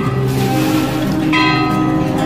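Temple bells ringing over devotional music, with a fresh bright ringing note setting in about one and a half seconds in.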